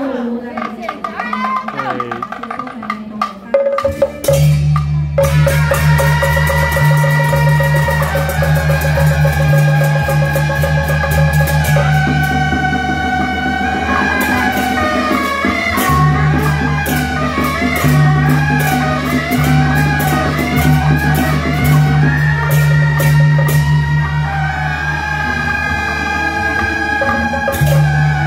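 Beiguan ensemble: suona shawms play a loud melody over drum, gong and cymbal strokes, starting about four seconds in after a few seconds of voices.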